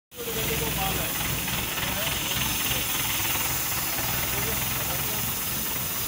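Steady hiss and uneven low rumble, with faint voices in the background.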